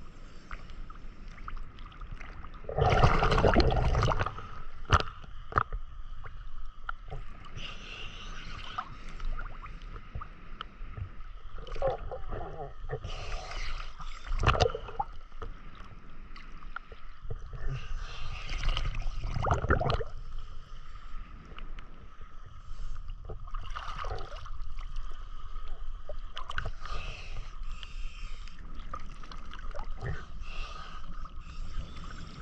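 Sea water sloshing and splashing around a camera held at the surface as a swimmer moves through calm water. There are irregular louder surges every few seconds, the strongest about three seconds in, over a steady faint high hum.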